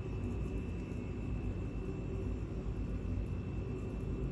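Steady low background hum with a thin, constant high whine above it, like a running fan or appliance; no distinct sound of the bacon being wrapped stands out.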